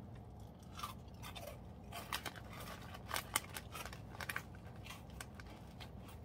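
Crunchy spicy chicken-flavoured snack being bitten and chewed close to the mouth: a run of sharp, irregular crunches, loudest and thickest about two to four and a half seconds in.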